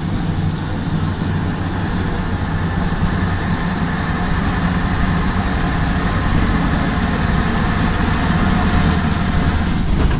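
Leyland PD2 double-decker bus's diesel engine running steadily as the bus drives, heard from inside the lower saloon, with a steady low drone and body and road noise. It grows a little louder through the middle of the stretch.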